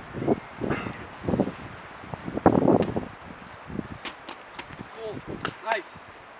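Boxing gloves landing a quick run of punches on a sparring partner's raised gloves, heard as a series of short sharp smacks. Near the end a voice shouts "Дай!" ("Give it!") to urge the puncher on.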